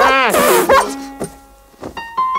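Cartoon character sound effects from an animated children's TV title card: a sudden loud call that falls steeply in pitch, a shorter call just after, then a held note and a few light plucked notes near the end.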